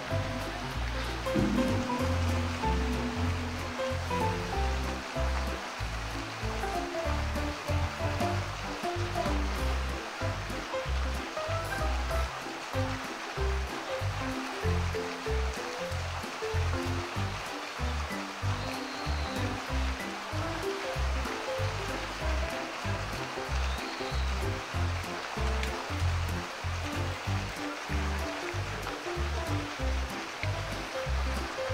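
Background music with a steady rhythmic pulse, over a continuous rush of flowing water.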